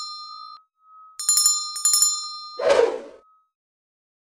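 Subscribe-button animation sound effects: bright bell dings, two in quick succession a little over a second in, over a steady high beep, then a short rushing burst of noise about two and a half seconds in.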